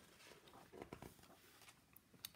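Near silence with faint paper rustling as a picture book's page is turned, a few soft brushes clustered about a second in.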